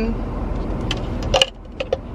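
Clear plastic cups being handled, giving a few light clicks and knocks about a second in and near the end, over a steady low hum in a car cabin.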